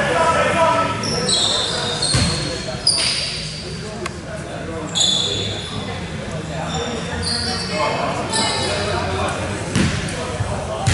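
Basketball bouncing on an indoor court floor, several separate bounces with the last near the end, amid many short high-pitched squeaks from sneakers on the court and voices in a large gym.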